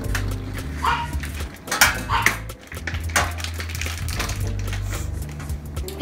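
Background music with steady low held notes, over the crinkling of shrink-wrap plastic being cut and pulled off a ham. A few sharp clicks and clinks come from the metal roasting pan and rack.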